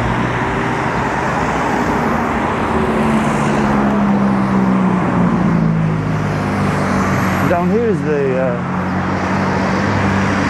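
Road traffic: cars passing on a main road, a steady wash of tyre and engine noise with a low engine hum underneath. A short voice cuts in briefly near the end.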